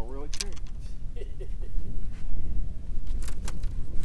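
A bass lifted by hand from the water at the boat's side: a few short sharp sounds around a second in, at about two seconds and near the end, over a steady low rumble, with a brief voice at the start.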